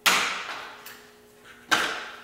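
Plastic hinge covers on a Jeep Wrangler JK tailgate pulled loose by hand: a sharp snap right at the start and another near the end, each dying away over about half a second.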